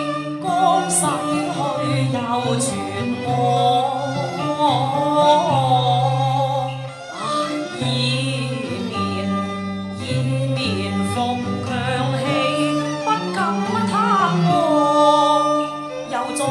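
Cantonese opera singing: a high vocal line in the female role, sliding and ornamented, over traditional Chinese instrumental accompaniment, with a few sharp percussion strikes in the first few seconds.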